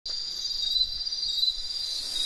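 Insects trilling steadily in a continuous high-pitched chorus.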